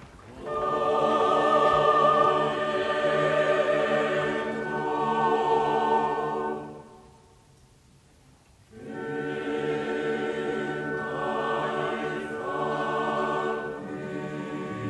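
Opera chorus singing held notes with vibrato over a low accompaniment. The music stops for about two seconds in the middle before the chorus comes back in.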